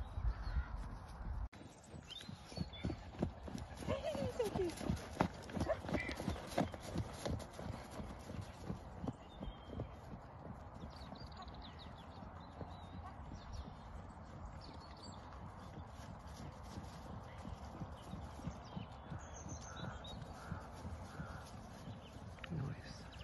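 A horse's hoofbeats on grass turf as it canters, a rhythmic run of dull thuds that is loudest a few seconds in and then grows fainter as the horse moves away across the field.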